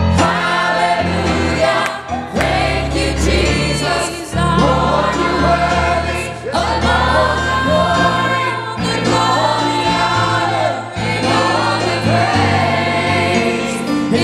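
Church choir singing a gospel song over instrumental accompaniment, with a man and a woman leading on handheld microphones; the phrases are continuous, with long held notes.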